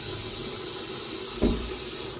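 Bathroom tap running steadily into a sink, with a door thudding shut about one and a half seconds in.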